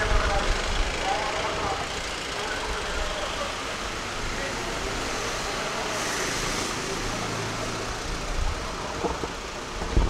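Road traffic noise from a police SUV driving past on a tarmac road, a steady rush of engine and tyre noise, with voices heard faintly in the first second or so.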